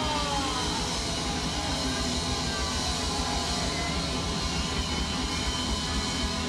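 Punk rock band playing live at full volume: distorted electric guitar, bass and drums blended into a dense, steady wash.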